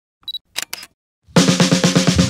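A short high electronic beep followed by two quick clicks of a camera shutter, then music starts about a second and a half in with fast, even drum hits.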